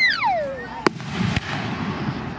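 Fireworks going off: a falling whistle in the first half-second, then two sharp bangs about half a second apart.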